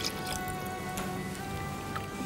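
Soft background music with long held notes, over faint splashing of milk being poured into a stainless steel saucepan.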